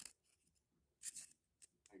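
Glossy trading cards sliding against one another as a pack is flipped through by hand: a few brief, faint swishes.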